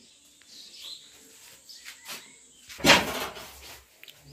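A few faint high chirps and small clicks, then one sharp knock about three seconds in, the loudest sound, with a short ring after it.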